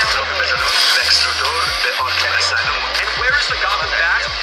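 Film trailer soundtrack: dramatic music with a deep bass note that pulses on and off under a dense layer of sound effects.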